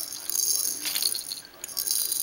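Baby's plastic rattle toy on a seat tray, rattling and jingling in bursts as her hand shakes and turns it, with a brief lull just past the middle.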